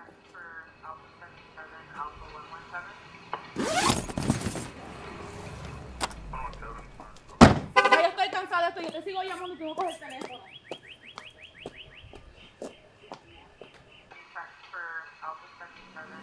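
Voices, with a loud rushing burst about four seconds in and a single sharp thunk a little past seven seconds.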